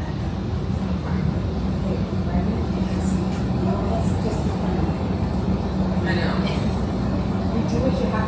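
Steady low hum of room noise, with faint, indistinct talk from people across the room.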